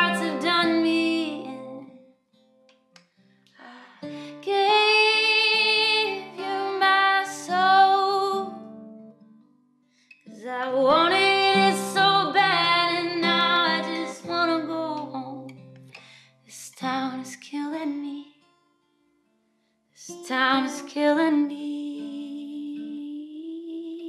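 A woman singing to her own acoustic guitar, a slow song in phrases with long held notes that waver, broken by short near-silent pauses.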